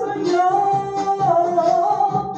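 A woman singing long held notes over band accompaniment.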